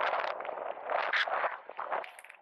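Inline skate wheels rolling and scraping on the road surface, in swells with the push strokes: loud at the start, again about a second in, then fading.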